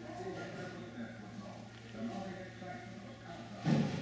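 Faint, indistinct voices over a steady low hum, with one brief loud knock near the end.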